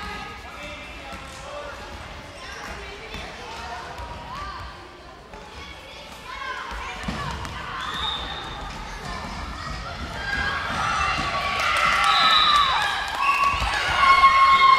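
Children shouting and calling out during a ball game in a sports hall, with a ball thudding on the floor a couple of times; the shouting grows louder in the second half.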